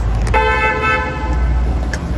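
A car horn sounds once, held for about a second and a half, over the steady low rumble of curbside traffic.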